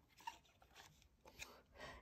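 Near silence, with a few faint soft taps and rustles as the cardboard page of a small board book is turned by hand.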